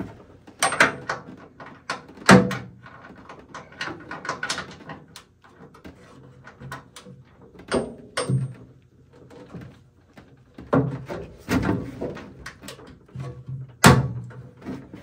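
Hand ratchet with a 17 mm socket on an extension working a table bolt inside a table saw cabinet: irregular metal clicks and knocks as the tool is fitted and turned, with one sharp, loud clack just before the end.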